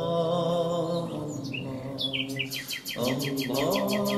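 A bird singing over a drawn-out chanted dhikr voice. The bird gives short chirps, then a rapid trill of evenly repeated high notes in the second half while the chanting drops out and comes back.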